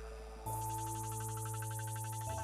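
Roland Zenology software synthesizer playing its 'Vocal Flicker' preset from the Vocal Injections pack: held synth chords with a rapid flutter in the upper range. The chord and bass note change about half a second in.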